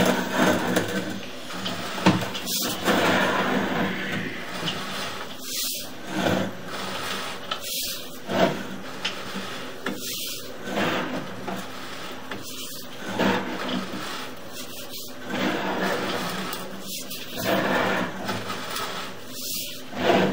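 Sewer inspection camera's push cable being fed by hand down the drain line: a rubbing, scraping sound in strokes about every two and a half seconds, with a brief pause between each push.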